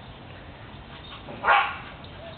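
A dog gives one short bark about one and a half seconds in, during rough play with another dog.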